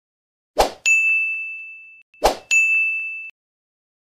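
Subscribe-button animation sound effect, heard twice: a sharp click, then a bright bell-like ding that rings and fades. The second ding is cut off shorter than the first.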